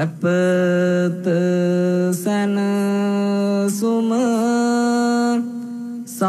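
A man's voice chanting a Buddhist chant in long held notes, with short breaks for breath between phrases and a few brief wavering turns in the melody.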